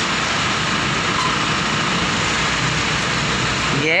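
Steady street traffic noise with a vehicle engine running: an even, continuous rush with no breaks.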